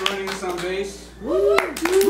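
Small audience clapping by hand, with voices cheering over it, including a couple of rising-and-falling whoops in the second half.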